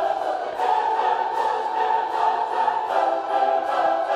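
Choral music: a choir singing long held chords that shift to new chords a couple of times.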